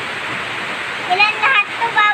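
Heavy rain pouring down, a steady, even hiss. A child's voice comes in about a second in.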